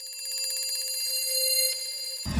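Alarm clock bell ringing, a fast continuous ring that starts suddenly and lasts about two seconds.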